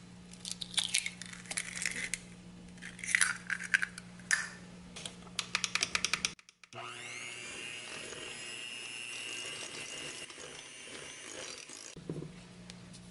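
A utensil scrapes and clinks against a glass mixing bowl as softened cream cheese and butter are stirred, ending in a quick run of clicks. Then a Luxel digital electric hand mixer starts with a briefly rising whine and runs steadily, beating an egg into the mixture.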